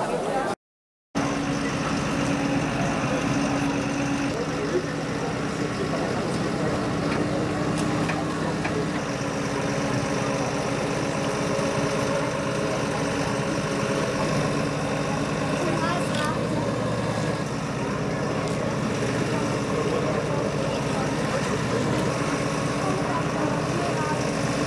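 Diesel engine of a fire-brigade crane truck running steadily at idle to drive its hydraulic loading crane as it lifts a car, a steady hum that is strongest for the first several seconds. Voices in the background.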